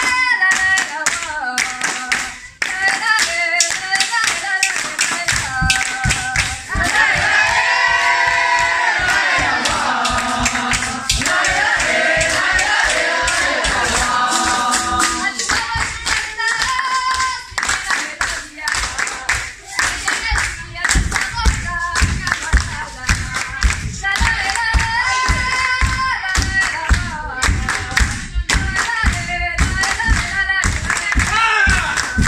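A capoeira song: a group singing, with a single voice at times and a full chorus at others, over hand clapping and the roda's berimbaus, pandeiro and atabaque. The atabaque's low beats come through strongly in the second half.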